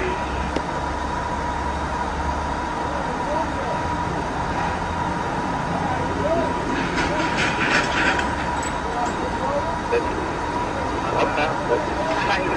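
An officer talking with a driver, heard faintly through a police car's recording audio over steady hiss and a constant high-pitched tone. A low rumble under it fades out after the first few seconds.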